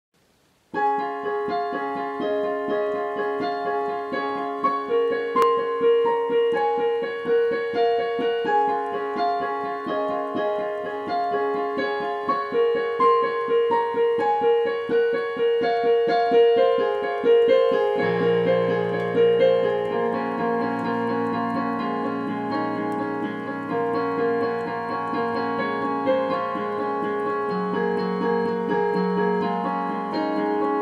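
Piano sound played on a digital synthesizer keyboard: a steady, fast run of repeated notes at about 125 beats a minute, starting just under a second in. Lower, held bass notes join about eighteen seconds in.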